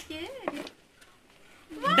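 A few short, wavering, meow-like vocal sounds, then a quiet moment, then a loud excited shout that breaks out near the end.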